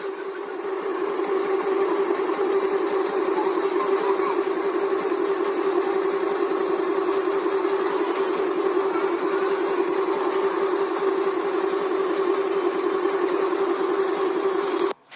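A steady mechanical drone of an engine or motor running at a constant pitch, unchanging throughout.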